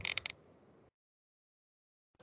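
A quick run of about four sharp computer mouse clicks within the first half-second.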